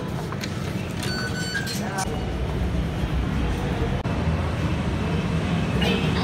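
Busy metro-station crowd noise: background chatter and footsteps over a low rumble that grows louder about two seconds in, with a short electronic beep about a second in.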